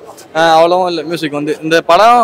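A man speaking, after a brief pause at the start.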